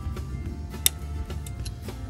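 Background music with one sharp metallic tick a little under a second in and a couple of fainter ticks after it: a wrench tapping off the peg (tang) of a freshly fitted M12 thread-repair insert.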